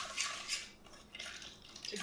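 A utensil stirring a wet oatmeal pie filling in a glass mixing bowl, clinking and scraping against the bowl in a few quick strokes, with a short lull in the middle.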